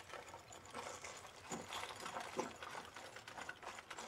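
Faint, irregular clicking and crackling from a war film's soundtrack, heard at low level during a battle scene in a burning, ruined city.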